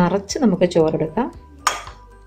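A woman's voice talking, then a metal spoon clinks once sharply against a glass bowl as cooked rice is scooped from it, near the end.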